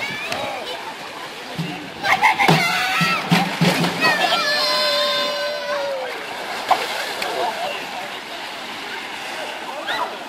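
A person jumps from a pool diving platform and hits the water with a splash about two seconds in. Shouting voices and one long held call follow.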